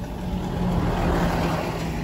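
A motor vehicle passing nearby: a steady rushing noise with a low engine hum that swells slightly in the middle.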